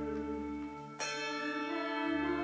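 Sustained organ chord with a handbell chord struck once about a second in, its bright ring fading slowly over the held notes. The deep bass notes drop out just before the bells sound.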